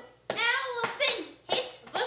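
A high-pitched, childlike voice talking in short, quick phrases, with a few sharp clicks between them.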